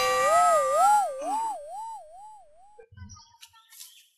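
A sudden hit, then a cartoon-style wobbling tone whose pitch swings up and down several times. It fades out after nearly three seconds, and a few faint knocks follow near the end.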